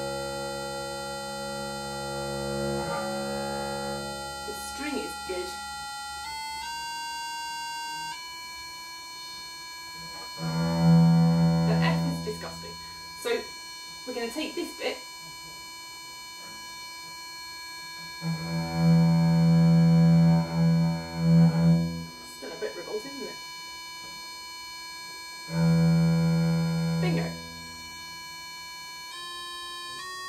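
A bass viol (viola da gamba) bowed in long low notes, four times, held against a steady electronic reference tone from a tuning app. The reference tone steps up in pitch a few times in the first eight seconds. The player is checking whether her frets are in tune against it.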